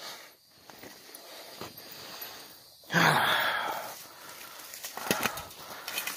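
A person's long, breathy exhale, starting suddenly about halfway through and fading over about a second, with faint rustling and small clicks before and after it.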